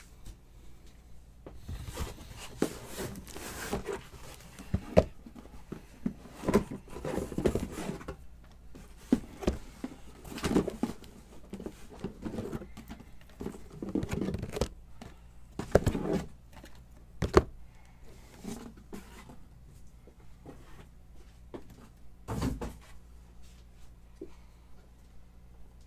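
Shrink-wrapped cardboard trading-card boxes being handled and set down on a table: irregular knocks, thuds and rustling, with several sharp knocks in the middle and one more burst near the end.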